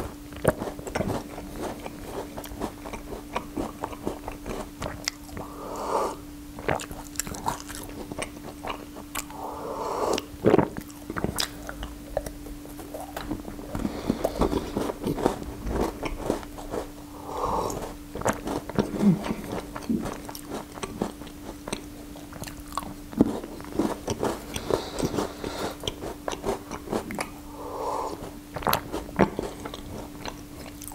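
Close-miked chewing of a chocolate-glazed pastry, with many short wet mouth clicks, broken every few seconds by sips and swallows of tea from a mug.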